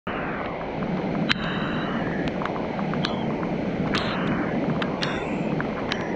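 Rushing creek water as a steady wash, with irregular sharp taps of rain striking close to the microphone, a few ringing briefly.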